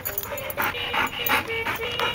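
Yellow Labrador retriever whining in short, high notes, with quick breathy sounds in between.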